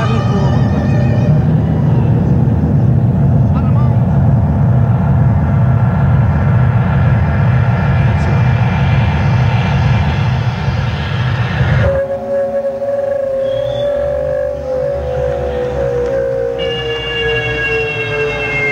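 Live jazz-fusion keyboard music: a dense, pulsing low synthesizer rumble under held tones, which changes suddenly about twelve seconds in to a long, slowly falling synthesizer tone over a thinner backing.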